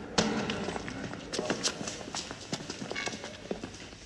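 Footsteps of several people walking on a stone floor in a large echoing hall: many irregular taps and scuffs, with one loud knock just after the start.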